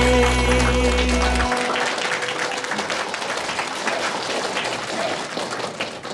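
The song's final held chord rings and ends about a second and a half in, giving way to an audience applauding.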